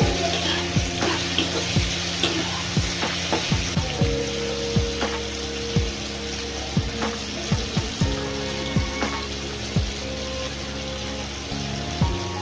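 Potato wedges, tomato and onion frying and sizzling in oil in a non-stick pan while being stirred, under background music with a steady beat.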